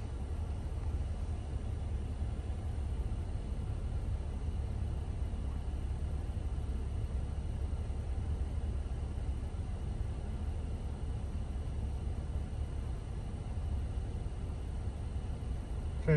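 2013 Jeep Wrangler JK's 3.6-litre V6 idling steadily, a constant low hum heard from inside the cab.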